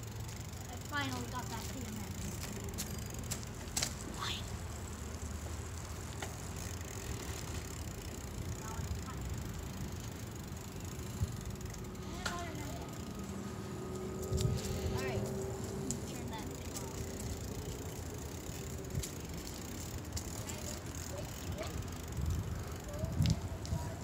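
Steady low rumble of wind on the microphone and tyres rolling on pavement while cycling, with a few brief faint voices.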